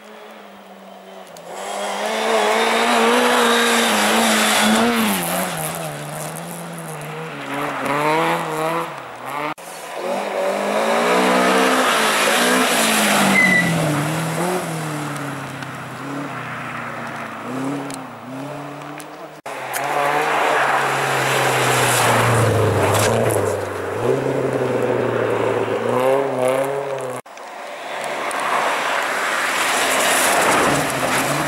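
Rally cars passing one after another, each engine revving hard through repeated rises and drops in pitch as it changes gear on the approach and goes by. The sound breaks off abruptly three times, at each cut from one car to the next. The last car, near the end, is a Volvo 240.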